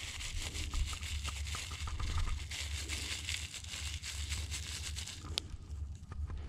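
Salt being sprinkled by hand over pieces of raw rabbit meat on a plastic cutting board: a faint patter of small ticks and a soft hiss over a low steady rumble, with one sharp click near the end.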